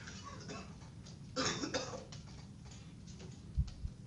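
A person coughs, two quick coughs about halfway through, in a lecture room. Near the end there is a brief dull low bump.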